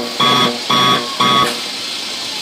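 A run of short electronic beeps, evenly spaced at about two a second. Three sound before they stop about one and a half seconds in.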